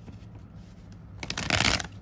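Tarot cards being shuffled: a short riffle of under a second, about a second and a half in, over a low steady hum.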